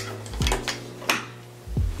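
A few light knocks and clicks spread over about two seconds, over a faint steady low hum of a small room.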